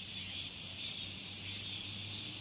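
Summer cicadas in a continuous, steady, high-pitched chorus.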